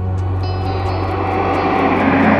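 Dramatic background score: a steady low drone with a whooshing noise riser that swells and grows louder, building toward the next musical cue.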